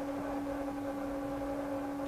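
A faint, steady hum on one unchanging pitch with a few overtones, carrying on unbroken through a pause in loud singing.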